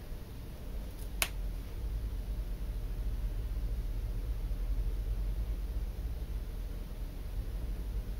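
Quiet room tone with a steady low rumble, and one sharp click a little over a second in.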